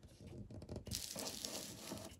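Faint, steady rustle of a paper sheet being handled and shifted.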